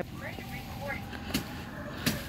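Faint road traffic with a steady hum, and a single click a little over a second in.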